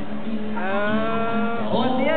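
A man singing one long held vowel that sags slightly in pitch, then breaks to a new note near the end, over an acoustic guitar.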